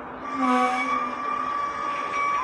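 Mugunghwa-ho passenger train rolling slowly along the platform as it pulls in to stop. About a third of a second in, a steady high brake squeal sets in over the rumble of the coaches, with a brief lower pitched tone just after it starts.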